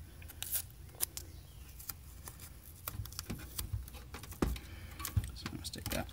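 Scattered light clicks, rustles and a few soft knocks of hands handling blue painter's tape against the plastic Apple IIgs case.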